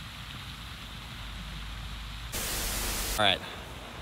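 Steady rushing spray of pond aerator fountains, a wide hiss with no rhythm, growing louder for about a second near the end.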